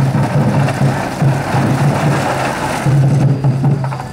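Festival float's drum beating a steady rhythm, about two to three strokes a second, under the noise of the crowd hauling the float.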